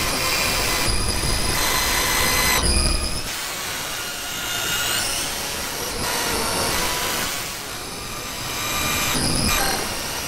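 Horror-film sound design: several high-pitched whining tones over a noisy rumble. The tones change pitch every second or so, and some glide upward.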